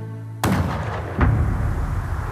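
Two gunshots from a long gun: a sharp crack about half a second in that cuts off a held music drone, then a louder one just over a second in. Each leaves a rumbling, echoing tail.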